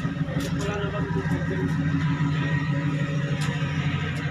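Docked fast ferry's engines running with a steady low hum.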